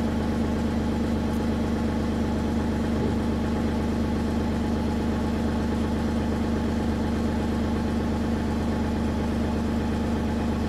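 The 49 HP turbo diesel engine of a Mongoose 184-HD trailer jetter running at a steady speed, driving the high-pressure pump as it circulates antifreeze through the jetter hose during winterization.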